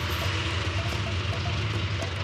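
Tuk-tuk's small engine running steadily with road and traffic noise while the vehicle drives, heard from inside its open passenger cabin.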